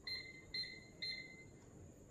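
Three short, high electronic beeps about half a second apart from a green-beam line laser level as it is handled, the third a little longer.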